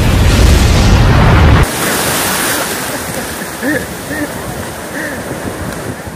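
A loud, deep rumble of a giant wave crashing, from an inserted disaster-film clip, that cuts off suddenly about one and a half seconds in. Then sea surf and wind noise on the microphone.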